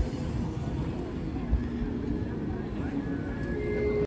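Low rumble of wind and road noise from riding a bicycle along the street, with a sharp thump about one and a half seconds in. Faint voices and a few held musical tones come in near the end.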